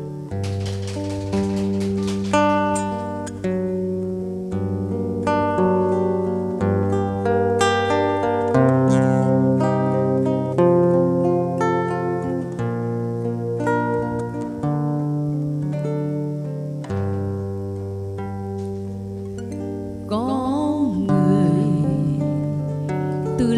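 Acoustic guitar playing the song's instrumental introduction: a line of picked single notes over long, held bass notes that change every few seconds. Near the end a woman's voice comes in singing.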